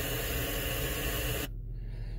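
Car radio hissing with steady static, cut off suddenly about one and a half seconds in, leaving only a low engine rumble underneath.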